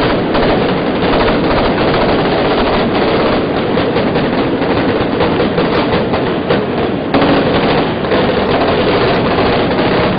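Loud, continuous rapid crackling and rattling like gunfire, over a dense rumble, with a slight shift about seven seconds in.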